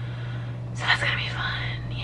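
A woman's breathy whisper, starting about a second in, over a steady low hum.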